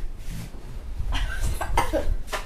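A person coughing, in short bursts starting about a second in.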